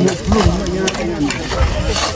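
Pickaxes, hoes and shovels striking and scraping stony ground in sharp irregular knocks, with several people talking over the work.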